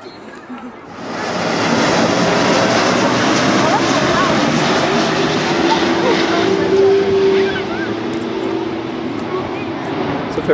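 An airplane passing low overhead: a loud, steady roar that comes in quickly about a second in and eases a little near the end, with a held tone in its middle.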